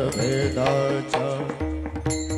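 Varkari devotional kirtan music: a sung line ends with a falling glide at the start, then a few drum and hand-cymbal strokes sound over a sustained accompanying tone.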